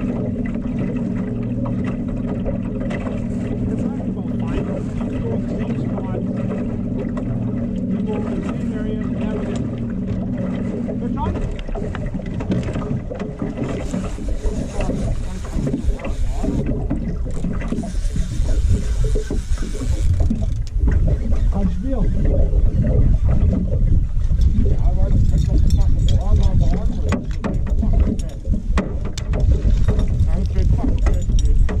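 Outboard motor running steadily at trolling speed, a constant hum. About eleven seconds in, the hum gives way to louder, irregular low rumbling.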